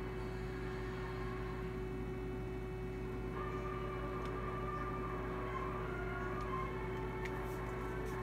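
Faint television sound picked up across the room over a steady electrical hum, with a faint tune in the middle and a few light clicks near the end.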